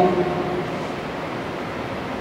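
Steady, even room noise of a large hall heard through a speech microphone. The last word's reverberation fades away over the first half second.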